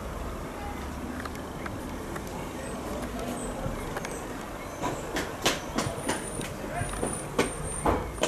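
Hushed outdoor ambience with a low steady rumble while a football crowd holds a minute's silence. From about five seconds in come scattered sharp clicks and a few brief high chirps.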